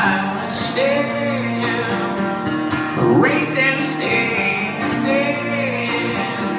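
Live acoustic rock band: two acoustic guitars strumming steady chords, with a man's voice singing long held notes over them about a second in, around three seconds in and again near the end.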